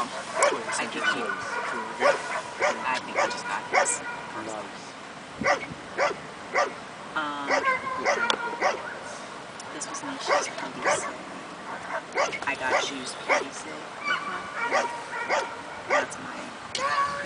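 A protection dog barking repeatedly at a decoy in a bite suit while guarding him, sharp barks coming in quick runs with short pauses.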